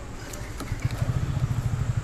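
An engine idling with a fast, even low throb that sets in under a second in, with a couple of light clicks just before it.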